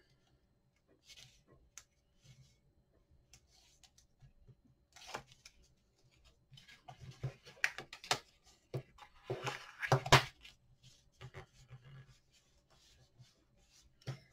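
Black cardstock being pressed and rubbed down by hand and with a folder tool over a taped chipboard panel: scattered rustles, taps and rubs of paper, the loudest cluster about ten seconds in.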